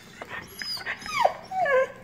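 Husky whining: a string of short, high whines that glide up and down in pitch, one after another.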